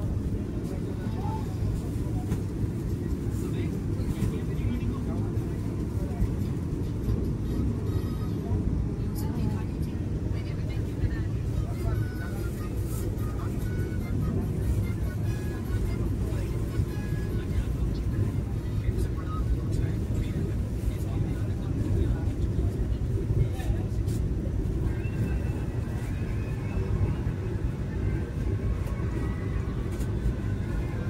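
Vande Bharat Express train running at speed, heard inside the passenger coach as a steady, even low rumble, with faint voices in the background.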